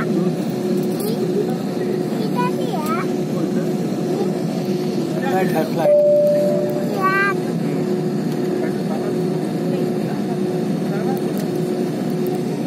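Airliner cabin while taxiing: the steady hum of the jet engines and cabin air system with a constant tone, under passengers' chatter. A short steady higher tone comes about six seconds in.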